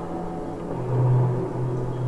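Electroacoustic music made from layered, much slowed-down recordings of bamboo and metal wind chimes: long held, overlapping tones, with a deep low tone swelling in just under a second in and holding.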